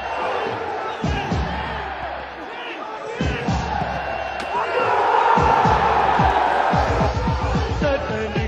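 Music with a heavy drum beat mixed over stadium crowd noise; the crowd grows louder about five seconds in.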